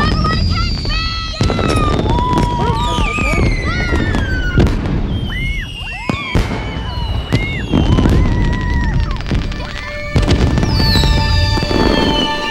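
Fireworks display: sharp bangs of aerial shells going off at uneven intervals, among many whistling rockets whose pitch glides downward.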